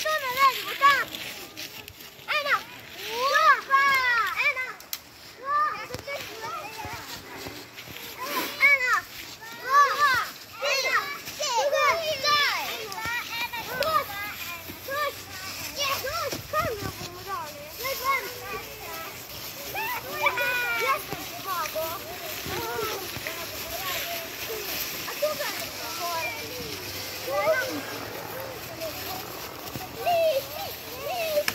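Several young children's voices, high-pitched calls and chatter, over a steady rustle of dry leaves being trampled.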